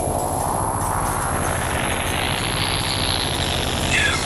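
A whoosh of noise that rises steadily in pitch for about three seconds over a fast, flickering low rumble, building up like a transition sound effect.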